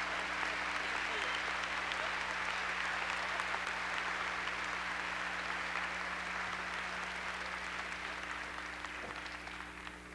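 Large audience applauding steadily, thinning out near the end.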